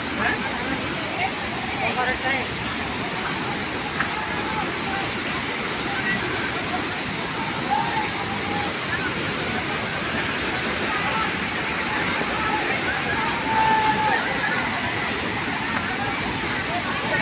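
Steady roar of a large waterfall in heavy flow, with a crowd's voices faintly over it.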